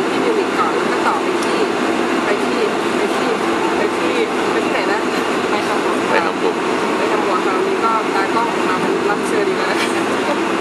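Steady airliner cabin noise, a constant drone with a low hum, with a woman talking over it.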